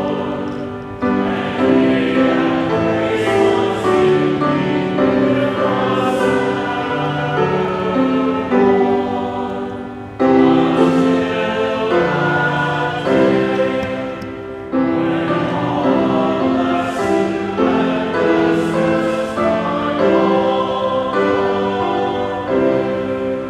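A hymn sung by many voices together, in sung phrases with short breaks between lines about 1, 10 and 14.5 seconds in.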